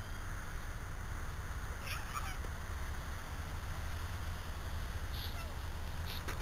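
Wind rumbling steadily on the microphone, with a short call about two seconds in and a briefer one near five seconds in.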